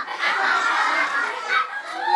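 Several people laughing in high-pitched cackles at the punchline of a riddle, overlapping and dense for most of the two seconds.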